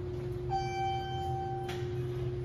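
Elevator's electronic arrival chime sounding a single steady ding about a second long, cut off by a sharp click, over a steady hum. On US elevators a single ding signals a car travelling up.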